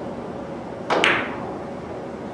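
Three-cushion carom shot: the cue tip strikes the cue ball, then a split second later the cue ball clicks sharply off an object ball, the two clicks coming about a second in.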